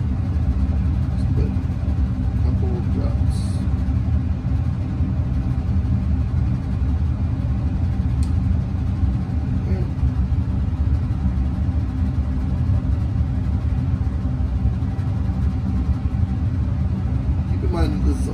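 Steady low rumble with a faint even hum, the constant background drone of machinery or ventilation, with a couple of faint clicks.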